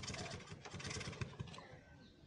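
Motorcycle engine running roughly in rapid uneven beats, then dying down near the end; the owner blames water mixed into the gasoline, and says the starter needs replacing.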